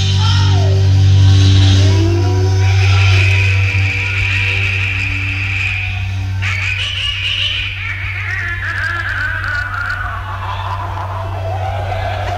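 Live hard rock band holding a low bass note under electric guitar and voice. A high note is held for a few seconds, then a long falling pitch glide follows.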